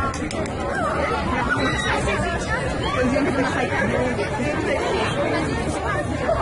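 Chatter of several people's voices talking over one another, too mixed to make out, over a steady low rumble.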